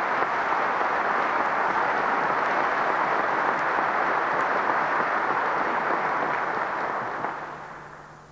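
Large audience applauding steadily, fading out near the end.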